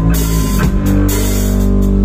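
Live rock band playing loud: drum kit with cymbals over sustained, ringing electric guitar notes.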